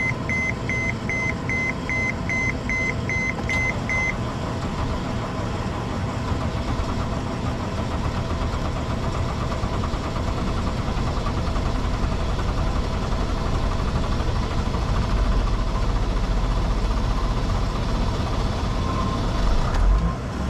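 Mercedes Sprinter diesel engine cranking on its starter for a long time in deep cold, beginning to catch near the end. The owner suspects gelled diesel fuel. A dashboard warning chime beeps about three times a second for the first four seconds.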